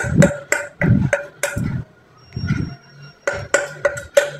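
A metal spoon tapping and pressing on the bottom of an upside-down stainless steel pot, about four light strikes a second, the pot ringing after each, with a pause of about a second and a half midway. The spoon is pressing a foil patch down over a leak in the pot.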